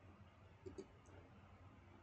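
Near silence with two faint computer keyboard keystrokes in quick succession, a little past halfway through.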